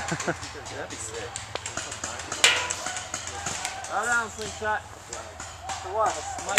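Scattered light taps and crunches on a pine-needle forest floor, with one sharp crack about two and a half seconds in. Brief voices come in shortly after.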